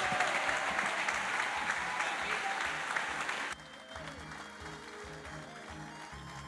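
Audience applauding in a large hall, with music underneath. The applause cuts off abruptly about three and a half seconds in, leaving only faint music.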